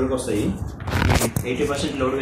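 A man talking, with a brief rustling scrape about a second in.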